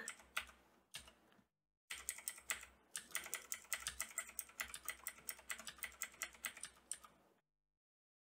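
Computer keyboard being typed on in quick runs of keystrokes, several a second, with a short break about a second and a half in; the typing stops about seven seconds in.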